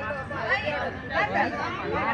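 Speech only: several people talking.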